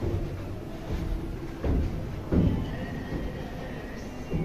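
Footsteps on a carpeted floor: a few dull thumps, the loudest about two and a half seconds in, over a steady low room hum.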